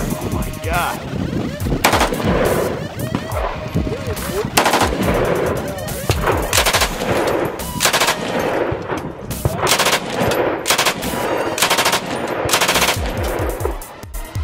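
Gunfire from rifles and machine guns: a mix of single shots and short bursts, loud and irregular.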